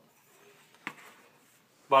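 Near silence, broken by a single faint click a little under a second in; a man's voice starts right at the end.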